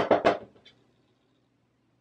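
The last spoken word of a phrase fades out about half a second in, followed by near silence with one very faint tick.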